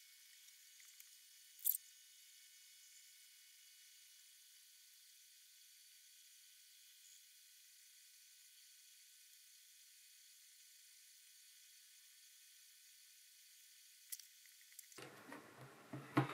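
Near silence: a faint high hiss, broken by two brief clicks, one about two seconds in and one near the end, with low room sound returning in the last second.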